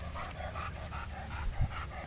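A dog panting fast, about five breaths a second, with a single thump a little past halfway.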